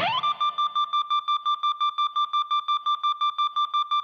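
A single high electronic tone that sweeps up in pitch at the start, then holds one note, pulsing on and off about seven or eight times a second, as a song intro.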